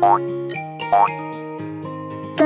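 Background music with held notes, with two short rising cartoon sound effects: one right at the start and one about a second in.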